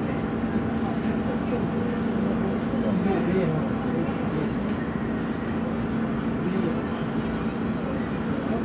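A steady low mechanical drone with a constant hum, under indistinct voices.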